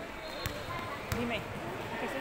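A basketball bouncing on the gym floor, two sharp bounces about two-thirds of a second apart, over a background of chattering voices.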